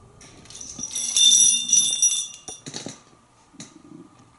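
Small metal bells and discs on a hanging parrot toy jingling and ringing for about two seconds as the bird jostles the toy, then a brief clatter near the end.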